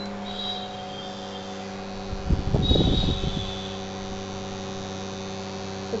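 Steady electrical hum of an induction cooktop running under a pan of boiling soup, with a brief louder burst of noise about halfway through.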